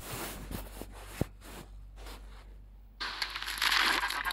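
Scattered crackles and clicks, then from about three seconds in a sudden loud, harsh burst of distorted noise as the edited logo video plays back in the phone editing app.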